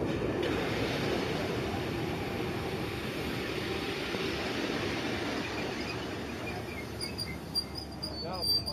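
Passenger train running slowly past the platform, a steady rumble of wheels on rail that slowly fades, with faint short wheel squeals in the second half.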